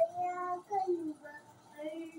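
A young child's voice singing a few short held notes.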